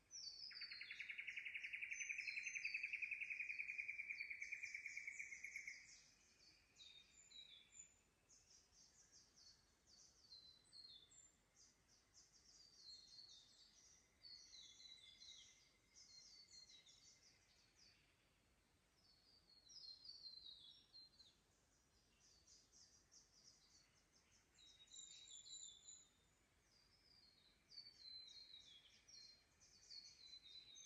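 Pre-dawn forest birds calling: many short, high chirping phrases repeated throughout. For the first six seconds a loud, steady buzzing trill stands out over them, and it comes back faintly twice later.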